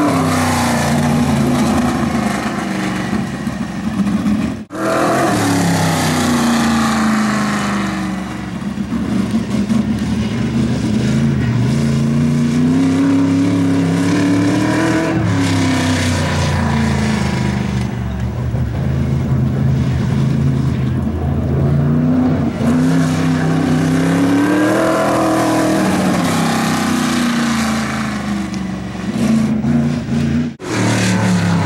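Sprint car's V8 engine lapping, revving up on the straights and easing off into the turns, so its pitch rises and falls in waves every few seconds. There is a short break about four and a half seconds in.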